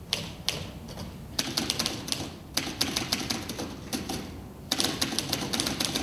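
Typewriter keys clacking: a couple of single strokes, then quick runs of typing in bursts with short pauses between them.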